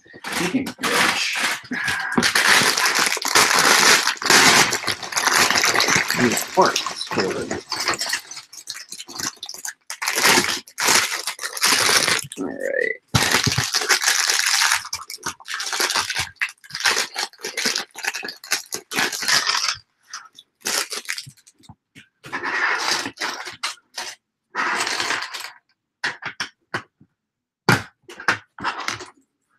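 Plastic LEGO pieces and parts bags rustling and clicking as they are handled and sorted on a desk. The sound comes in crackly bursts with short pauses.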